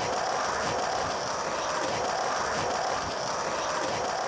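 A steady mechanical whirring with fast, irregular clicking, holding an even level throughout.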